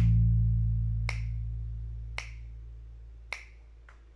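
A low note on a Kala U-Bass (an acoustic-electric bass ukulele with rubbery strings), heard through a Markbass amp, rings on and slowly fades out. Over it come four finger snaps about a second apart, keeping the beat.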